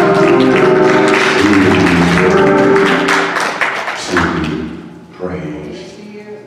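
Church worship music with held keyboard chords and percussion, loud, then fading out about four seconds in; a man's voice starts over it near the end.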